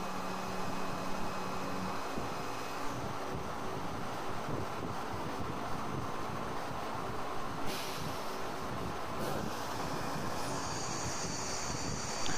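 CNC vertical machining centre running with flood coolant while milling a metal receiver tube: a steady machine noise with a low tone that stops about two seconds in as the cut ends. A hiss comes in later, and a steady high whine near the end.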